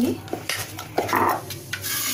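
Metal spoon stirring a thick buckwheat-flour batter in a stainless-steel bowl, with a few light clinks and a scrape against the bowl about a second in.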